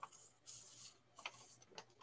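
Near silence, with a few faint soft clicks and brief hissy rustles.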